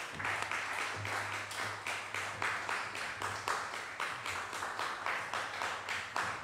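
A church congregation applauding, the claps falling in an even rhythm, to welcome the speaker. A steady low electrical hum runs beneath.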